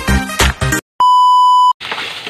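Electronic intro music with a drum-machine beat breaks off, and after a short gap a single steady electronic beep sounds for under a second. Right at the end a faint hiss of pork frying in the pan begins.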